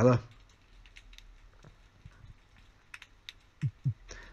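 Near quiet with a few faint, scattered clicks, and two short low sounds near the end.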